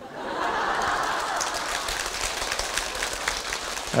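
Audience laughing and applauding together: a dense patter of many hands clapping under crowd laughter, strongest just after the start and easing slightly toward the end.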